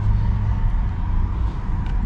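Steady low rumble of a running vehicle engine, with a faint steady hum above it.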